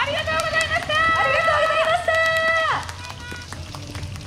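Several high-pitched women's voices calling out together in long held shouts. The calls overlap, then glide down and stop about three seconds in, followed by a few scattered claps.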